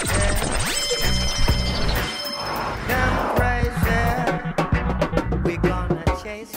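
Reggae sound-system mix music with heavy bass, overlaid with electronic effects that glide in pitch, one sweeping down and one sweeping up. A reggae groove with regular drum strokes takes over near the end.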